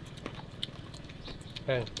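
Faint chewing of crunchy pickled chicken feet, with a few small crisp clicks, and a short spoken word near the end.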